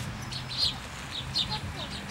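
Small birds chirping: short high calls several times a second, over a low steady rumble of street traffic.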